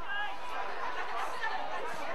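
Several people shouting and calling at once across an open field, overlapping so that no words come through clearly.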